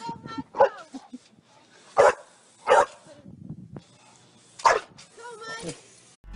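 A dog barking: four short, loud barks at irregular intervals, with quieter sounds between them.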